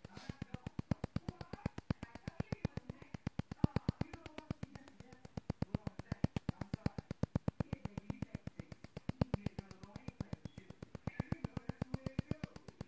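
Handheld ultrasonic skin scrubber (skin spatula) ticking in its infusion mode: a fast, even run of sharp clicks that never lets up.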